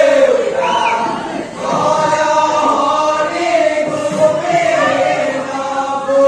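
A group of voices chanting a husori song in unison, long held notes that rise and fall slowly, with no drums or cymbals in this stretch.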